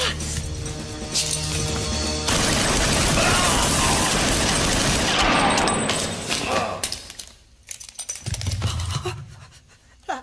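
Film soundtrack: a sustained burst of automatic gunfire over background music, starting about two seconds in and lasting about three seconds, followed by a few scattered sharp reports near the end.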